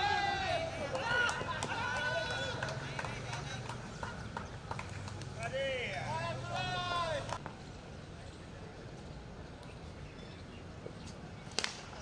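Cricket players calling out across the field in loud, rising and falling shouts, then a quieter stretch. Near the end comes a single sharp crack of a cricket bat hitting a tennis ball, and shouting follows.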